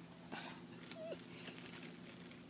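Dogs jostling close to the microphone: soft scuffs and clicks, with one short falling whine about a second in, over a faint steady hum.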